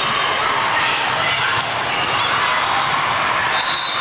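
Volleyball match in a large hall: many overlapping voices of players and spectators, with occasional sharp thuds of volleyballs being hit and bouncing.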